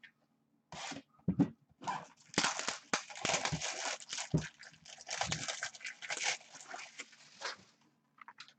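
Plastic shrink wrap crinkling and tearing as a sealed trading card box is unwrapped by hand, with a few knocks of the box on the desk.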